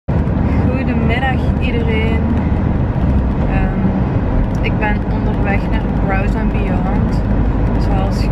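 Steady low rumble of a car's engine and road noise heard inside the cabin, under a woman's voice talking.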